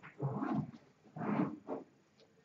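A person's voice making two short, murmured sounds without clear words.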